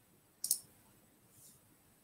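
A single sharp, high-pitched click about half a second in, with a faint soft swish later, over quiet room tone.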